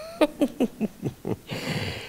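A man laughing: about half a dozen quick breathy 'ha' bursts, then a drawn breath near the end.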